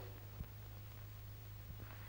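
Quiet, worn old film soundtrack: a steady low hum with one faint click about half a second in.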